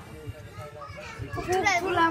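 Only speech: a child's voice reading a birthday card aloud in French, with other voices low behind it.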